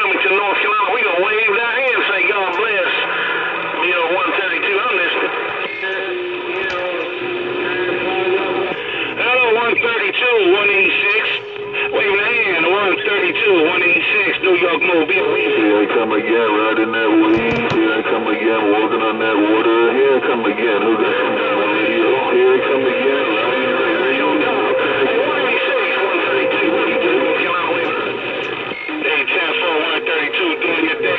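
Uniden Bearcat CB radio receiving on channel 28: a crowded jumble of distorted, warbling voices over a steady high whistle, with held squealing tones coming and going.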